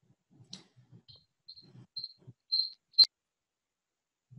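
A run of about six short, high-pitched chirps at one pitch, half a second apart and growing louder, the last one ending in a sharp click about three seconds in.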